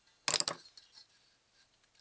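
A screwdriver set down onto steel pliers and a magnet on a wooden table: one short metal clatter about a quarter of a second in.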